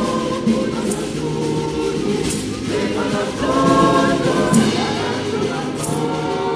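A choir singing a hymn together in a church, with occasional hand claps.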